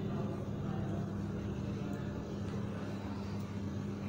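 A steady low hum under a faint, even rushing noise, with no clear events or changes.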